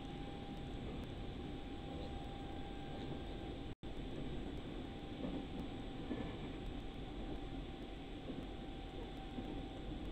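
Steady running noise inside a moving train carriage, low and even, with a faint constant tone. The audio cuts out completely for a split second about four seconds in.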